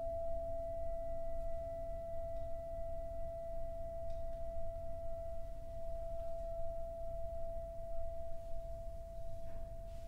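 Tibetan singing bowl sounding one steady, sustained tone with fainter overtones above it. The tone rings on without fading, over a low rumble.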